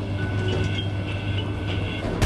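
Lift car travelling: a steady low hum with a faint, even high-pitched whine.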